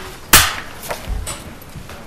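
A single sharp knock on the table close to a microphone about a third of a second in, followed by a softer low thud about a second in.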